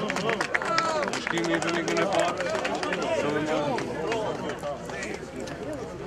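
Several voices talking and calling out close to the microphone, overlapping, with scattered sharp clicks; the voices fade somewhat near the end.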